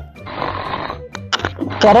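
A person snoring: one long, breathy snore, followed by a few faint clicks.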